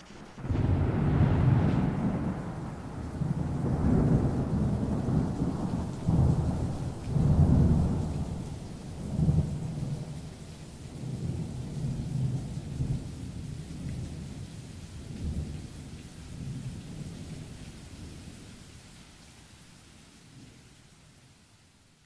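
Thunder rumbling in irregular rolls over a steady hiss of rain, fading out slowly over the last several seconds.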